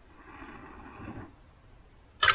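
A single long breath blown into a smouldering tinder bundle held in the hands, lasting about a second and growing stronger toward its end, fanning the ember until the bundle catches flame.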